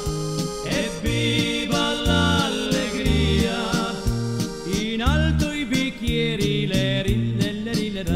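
Music from an Italian dance-band LP, heard between sung verses: a melody line over a bass line that steps between notes and a steady beat.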